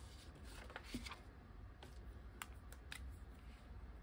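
Faint handling of paper challenge cards and a cash-envelope binder on a desk: a few soft, scattered ticks and rustles over a low steady hum.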